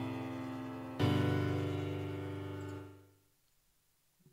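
FL Keys, FL Studio's built-in piano plugin, playing back sequenced piano chords: one chord still ringing, a new chord struck about a second in, then dying away about three seconds in.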